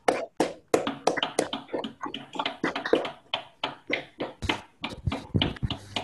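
Hands clapping in quick, irregular claps, several a second, from more than one person.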